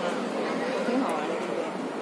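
Several people's voices talking at once: background chatter in a busy, echoing room.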